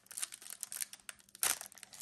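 Foil wrapper of a Panini Illusions football card pack crinkling and crackling as it is torn open by hand, with one louder crackle about one and a half seconds in.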